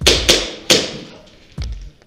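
Airsoft pistol fired three times in quick succession, sharp cracks with a short ring inside a steel shipping container, followed by a low thud.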